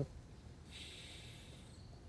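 A faint breath, a soft hiss about a second long.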